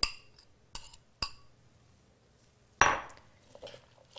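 A spoon clinking against a ceramic bowl as a thick flaxseed binder is scraped out into a mixing bowl: three short ringing clinks in the first second or so, then a louder scraping knock a little under three seconds in.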